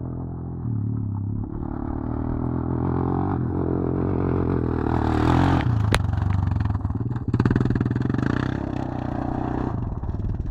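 Suzuki LTZ400 quad bike's single-cylinder four-stroke engine running and revving. The revs climb to a peak about five seconds in and then drop, with a sharp click just before six seconds. Uneven revving follows.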